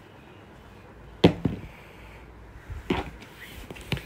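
Two short knocks from a cardboard shipping box being handled, the first loud, about a second in, and a weaker one near three seconds.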